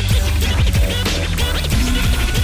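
Hip hop music with a steady beat and DJ turntable scratching, with quick sweeps up and down in pitch.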